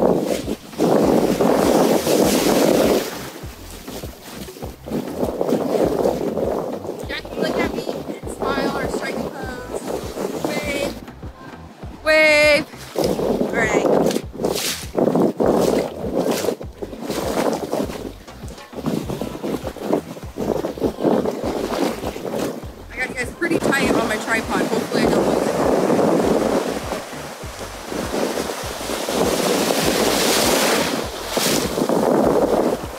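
Ocean surf breaking and washing through the shallows, with heavy wind buffeting the microphone. Brief voices are heard a few times in between.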